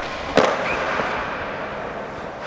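Skateboard landing a big flip on a smooth concrete floor: a sharp clack at the start and a louder smack of the wheels hitting the floor about half a second in, then the wheels rolling steadily across the concrete.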